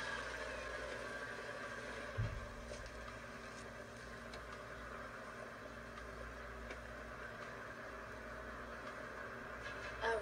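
Steady low hum of a film scene's car-interior background noise, played through computer speakers and picked up by a phone, with one soft low thump about two seconds in.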